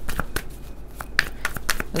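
A deck of tarot cards being shuffled by hand, a quick irregular run of soft card clicks and slaps.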